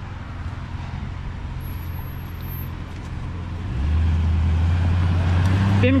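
A pickup truck's engine running close by, turning louder about four seconds in as the truck pulls through the intersection.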